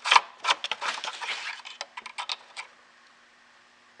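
Plastic oil-filler cap and dipstick being drawn out of a lawnmower engine's filler neck: a quick run of clicks and scrapes for about two and a half seconds.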